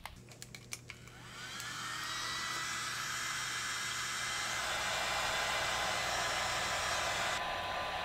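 Handheld electric heat gun switched on after a few clicks, its fan spinning up with a rising whine over the first couple of seconds, then blowing steadily. It is shrinking heat-shrink tubing over the power-lead connectors. Near the end the upper hiss cuts back, leaving a lower rush.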